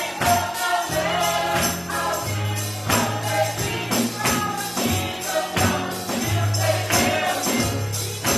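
A small gospel vocal group sings over a band with a steady beat and sustained bass notes, a tambourine shaken along with it.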